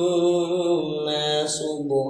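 A man's voice reciting the Qur'an in a slow, melodic chant, drawing out long held notes that step down in pitch, with a brief hissing consonant about one and a half seconds in.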